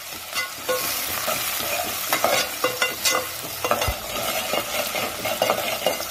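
Chopped onions, tomatoes and green chillies sizzling in hot oil in a metal pot while a metal ladle stirs them, with irregular scrapes and clinks of the ladle against the pot.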